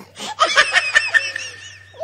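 A young child's high-pitched laughter in a quick run of giggles, starting just after the beginning and lasting about a second and a half.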